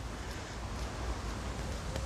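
Steady outdoor background noise with a low rumble underneath and no distinct events.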